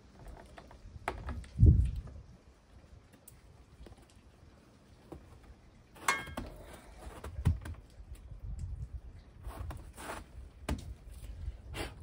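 Plastic solar panel cable connectors being snapped into four-to-one branch connectors, with scattered clicks and cable-handling rustle, and one loud low thump near the start.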